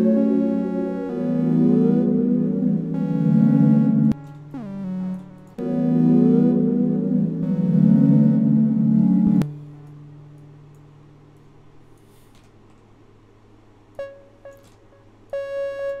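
Software synthesizer (Arturia Analog Lab V) playing a short keyboard melody from a MIDI piano roll. The phrase plays through twice and cuts off sharply about nine seconds in, followed by a few brief single notes near the end as other instrument presets are tried.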